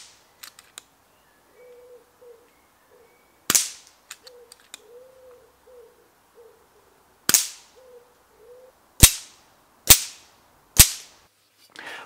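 Moderated FX Dynamic Compact .177 PCP air rifle firing five shots: two about four seconds apart, then three in quick succession about a second apart. Light clicks follow the early shots as the loading handle is cycled.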